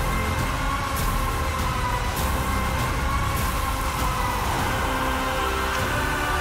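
Dramatic film-teaser background score: held tones over a heavy low rumble, with a few faint sharp hits.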